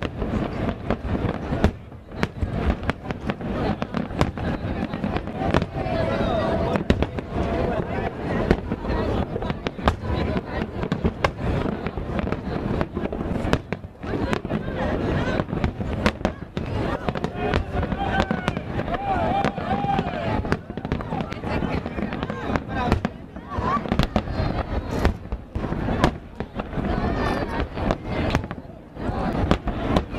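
Aerial fireworks shells bursting in quick succession: a dense, unbroken run of bangs and crackles.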